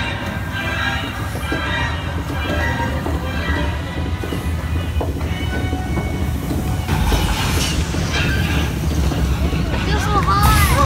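Music playing over a steady low vehicle rumble, growing louder and noisier about seven seconds in.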